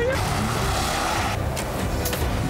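Car being driven hard on a snowy track: a steady rush of engine and tyre noise.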